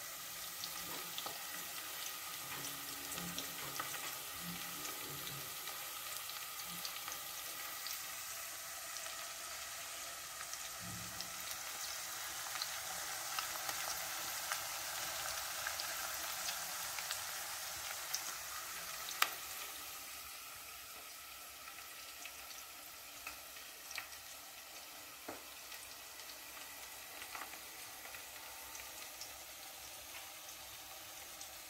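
Food cooking in enamel pots on a stovetop: a steady faint sizzle with light crackles. A single sharp click comes about nineteen seconds in, and the sizzle drops lower soon after.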